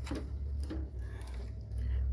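Shop background sound: a steady low rumble with faint voices in the distance.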